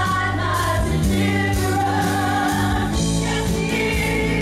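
Live gospel worship song: several singers on microphones in harmony, backed by a band with electric bass guitar holding low sustained notes and drums keeping time.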